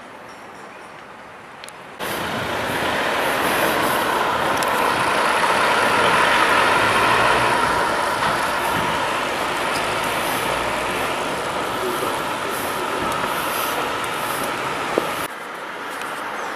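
A minibus driving past on a town street: a steady rush of engine and tyre noise that starts suddenly about two seconds in and cuts off shortly before the end.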